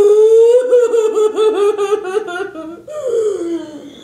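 A boy's loud, long vocal outburst: a held high cry that breaks into a rapid pulsing warble like laughter, then glides down in pitch and fades near the end.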